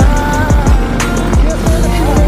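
Background music with a steady beat: deep bass-drum hits that drop in pitch, about two a second, with hi-hat ticks and a held melody above.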